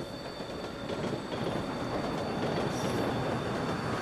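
Train running on rails as it approaches, its rumble growing louder, with a thin steady high whine over it.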